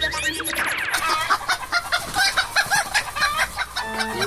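Chicken clucking sound effect for a cartoon rooster: a few rising glides at the start, then a rapid run of short, repeated clucks.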